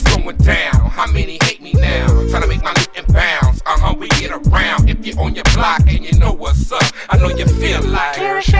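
West Coast gangsta rap track: a rapped vocal over a beat with a deep bass line and regular, hard drum hits.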